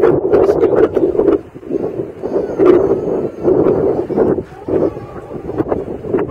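Wind buffeting the camera's microphone in loud, uneven gusts, rising and falling every half second or so.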